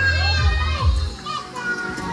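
Children's voices calling out in the street, with background music.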